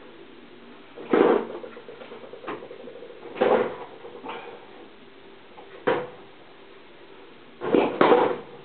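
Several short, loud vocal sounds from a man, about five brief bursts one to two seconds apart, over a faint steady background.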